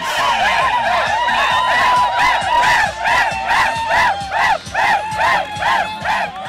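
A group of men shouting and chanting in celebration of a football cup win. From about two seconds in it settles into a quick, even chant of about three shouts a second.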